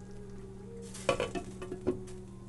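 A glass pan lid being set onto a cast-iron skillet, giving a few clinks and knocks in the second half, over a steady low hum.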